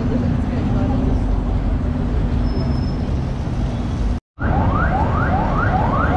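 City street traffic: a steady low rumble of passing cars. About four seconds in, an electronic siren starts, a quick rising sweep repeated about three times a second.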